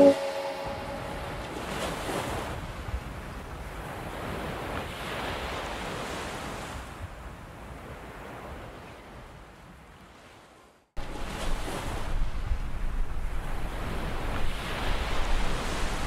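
Sea surf washing onto a sandy beach, a steady rushing noise that slowly fades away about ten seconds in and drops out briefly. It comes back suddenly and louder about a second later, with wind rumbling on the microphone.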